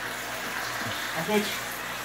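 Leafy greens (trapoeraba and spinach) frying in a stainless steel pan as they are stirred, a steady hiss, with a low steady hum underneath.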